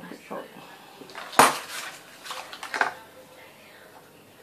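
A sharp clack of a hard object knocked or set down on a table about a second and a half in, followed by short scraping and rustling handling noises.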